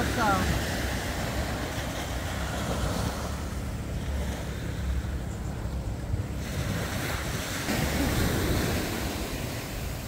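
Small waves washing onto a sandy beach, with wind rumbling on the microphone; the wash swells a little about eight seconds in.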